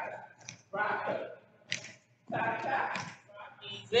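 Speech: a voice calling out line-dance steps and counts in short phrases.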